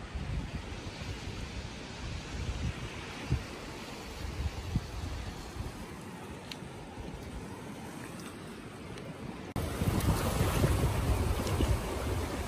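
Sea washing over a rocky shore, with wind buffeting the microphone. The wind noise steps up abruptly louder near the end.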